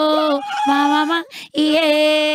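A woman singing unaccompanied in long, steady held notes, with a short break about one and a half seconds in before the song resumes.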